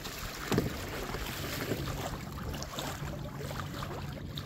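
Wind buffeting the microphone over small waves splashing and lapping against a kayak's hull, with one louder splash about half a second in.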